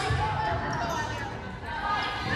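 A volleyball struck once at the very start, then the echoing hubbub of players' and spectators' voices in a gymnasium during a rally.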